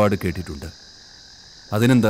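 Crickets chirring as a steady high background, heard on their own for about a second between stretches of a man narrating.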